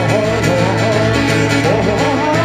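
A band playing a song, with guitar and singing over a steady beat.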